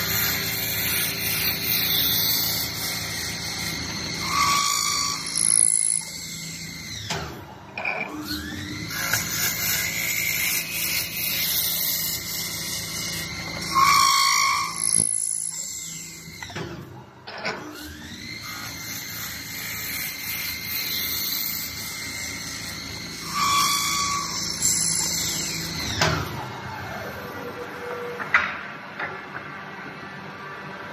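CNC wood lathe turning wooden handles in about three repeated cycles. In each cycle the spindle's whine rises in pitch and holds while the tool cuts noisily into the wood, then briefly dies away as one piece is finished and the next begins.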